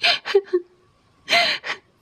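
A person gasping for breath: a quick cluster of short, breathy gasps at the start, then two more about a second later.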